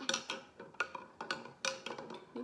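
Metal spoon clinking against the inside of a glass jar as salt water is stirred to dissolve the salt. There are several sharp clinks, each with a brief ringing tone.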